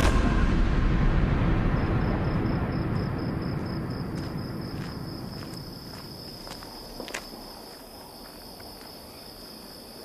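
A deep rumble from a battlefield explosion dies away over the first six seconds or so, while crickets begin chirping steadily, high-pitched, about two seconds in. A few soft footsteps on a cobbled yard fall in the middle.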